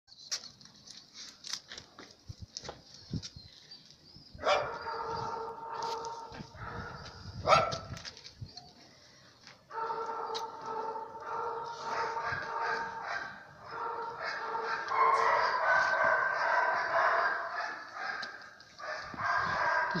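Dogs barking, from about four and a half seconds in, over a held, steady tone that runs in long stretches. Scattered light clicks come before it, and one sharp knock, the loudest sound, comes near the middle.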